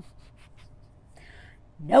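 Faint rustling and small clicks of a phone being handled, then a woman's loud, falling "No" near the end.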